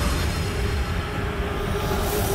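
Dark credits soundtrack: a steady low rumbling drone with a single held tone that comes in about half a second in.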